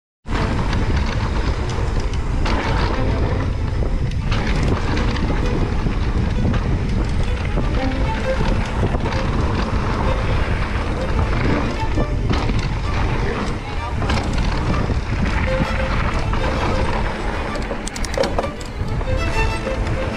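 Mountain bike ride on a dry dirt trail: wind rushing over the helmet-camera microphone with tyres rolling and skidding on loose dirt and the bike rattling over bumps.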